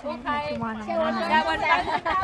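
Several people talking over one another close to the microphone, in lively overlapping chatter.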